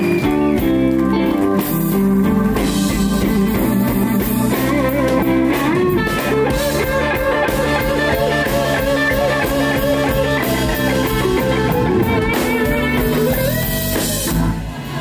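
Live blues band: an electric guitar leads over drums, with no singing. From about the middle, the guitar plays wavering, bent notes.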